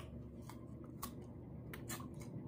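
A few faint, crisp snaps from eating firm unripe green mango, spread over two seconds.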